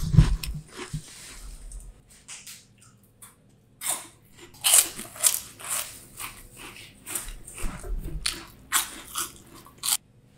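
Close-miked biting and chewing of crunchy puffed snack balls (Fountounia). There are crunches in the first second, a short lull, then a run of loud, sharp crunches from about four seconds in to the end.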